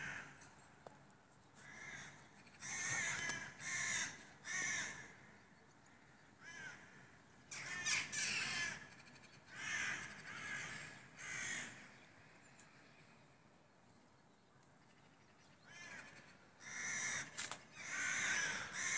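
A flock of crows cawing, short harsh calls coming one or two at a time in loose runs, with a lull of a few seconds before the calling picks up again near the end.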